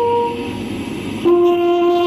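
A slow, solemn flute melody played for the minute of silence, in long held notes. A note dies away about half a second in, and a lower note enters a moment later and is held.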